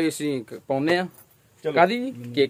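A man's voice speaking in short phrases, with a brief pause in the middle.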